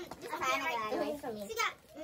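Young women talking, their voices pausing briefly near the end.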